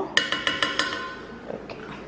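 A spoon tapped several times in quick succession against the rim of a small stainless steel saucepan, the pan ringing briefly after the taps.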